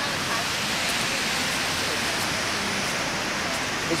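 Steady, even hiss of outdoor background noise, with faint voices murmuring.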